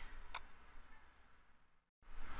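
Near silence: faint room hiss with a single short computer-mouse click about a third of a second in, the hiss fading out near the end.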